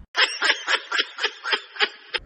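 Snickering laughter: a quick run of laughs, about five a second, thin-sounding with no low end, starting abruptly and cutting off at the end.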